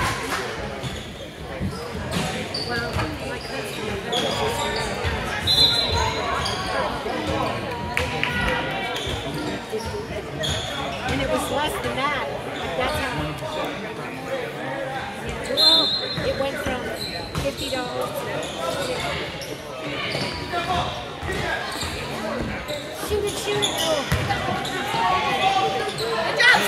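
A basketball bouncing on a gym floor during a youth game, over steady chatter from the players and spectators, with the echo of a large gym. Two short high tones stand out, about 6 and 16 seconds in.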